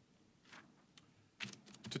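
A few faint clicks and light taps in a mostly quiet pause: one about a second in, then several close together near the end.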